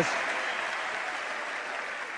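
Large crowd applauding in an arena, the clapping slowly dying down.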